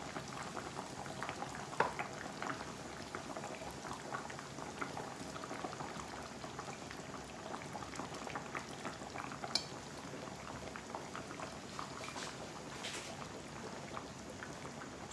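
Thick goat caldereta in coconut milk bubbling at a simmer in a frying pan: a steady run of small pops and crackles, with a sharper pop now and then.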